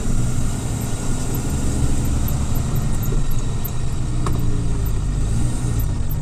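Loaded 22-wheel trailer truck's diesel engine running steadily at low speed as the truck creeps onto a weighbridge, heard from inside the cab.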